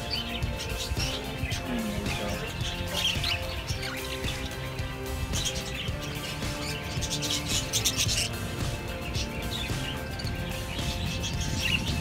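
Background music, with budgerigars chirping over it in short high chirps.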